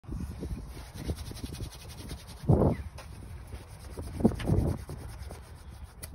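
Wind buffeting a phone microphone outdoors: a crackling low rumble throughout, with two louder gusts about two and a half and four and a half seconds in.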